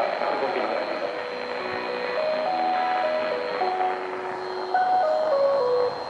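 A radio broadcast's musical jingle playing through the speakers of a National RX-F3 radio cassette recorder: a simple melody of held notes stepping up and down, louder near the end, over a thin steady high-pitched whistle.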